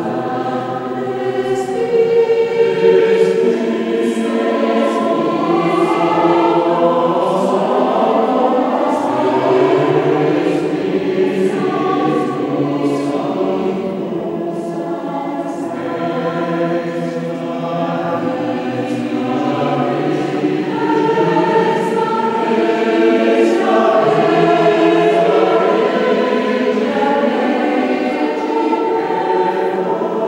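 Mixed choir of women's and men's voices singing sustained chords in several parts in a large stone church, the sung consonants standing out above the held notes. The singing eases a little past the middle, then swells again.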